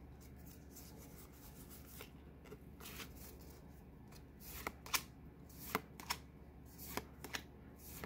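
Pokémon trading cards being handled in the hand, faint at first. From about halfway in comes a run of short, sharp flicks and snaps as the cards are slid one behind another.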